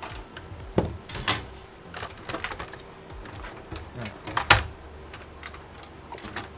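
Scattered clicks and knocks of screws, plastic and metal parts being handled inside an open HP desktop case as components are taken out, the sharpest about a second in and again about four and a half seconds in.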